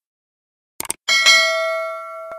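A short click sound effect, then a bright bell ding struck once about a second in, its ringing tones fading slowly: the click-and-bell chime of an animated subscribe button.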